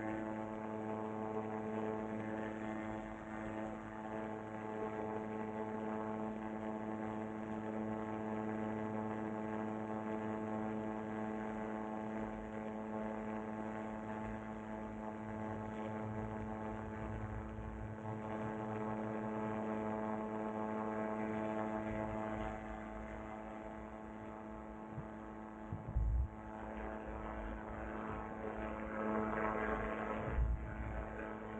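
Paratrike engine and propeller running at a steady cruise setting, an even droning hum with no change in pitch. Low wind rumble on the microphone comes and goes, strongest around the middle and with a short thump about four seconds before the end.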